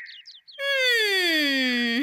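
A comic sound effect: one long, buzzy electronic tone that starts about half a second in and glides steadily down in pitch.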